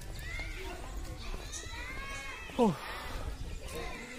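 A rooster crowing: arching pitched notes that end about two and a half seconds in with a loud, sharply falling note.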